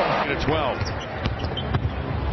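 Basketball bouncing on a hardwood court, a few short knocks in the second half, over steady arena crowd noise.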